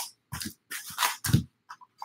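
Cardboard box of baseball card packs being handled and emptied out: three short bursts of rustling and scraping, then a couple of faint ticks near the end.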